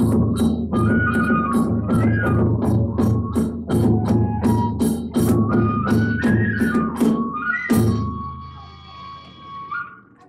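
Kagura hayashi ensemble playing: drum beats and hand-cymbal clashes about three a second under a bamboo flute melody. About eight seconds in the drum and cymbals stop and the flute holds one long note alone.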